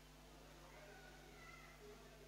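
Near silence: room tone, with a faint wavering high tone about halfway through.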